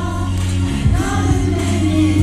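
A man singing a slow song live into a microphone, his voice gliding between held notes, over a military band's sustained accompaniment.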